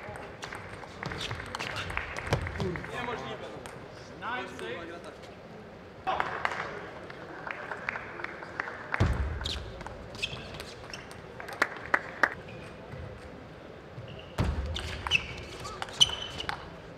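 Plastic table tennis ball clicking off rubber bats and the table in fast rallies, sharp ticks coming a fraction of a second apart, with a few louder smashes.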